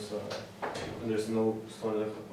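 Quiet speech: a person's voice talking in short phrases.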